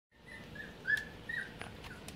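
Four-week-old Goldendoodle puppies giving short high squeaks, about five in two seconds, as they eat from a foil tray, with a few sharp clicks among them.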